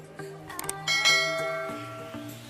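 Subscribe-button sound effect: a few quick clicks, then a bright bell chime about a second in that rings and fades away, over soft background music.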